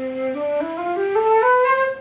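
Concert flute playing a one-octave ascending C major scale from its low C, about eight quick notes climbing stepwise up to the C an octave above.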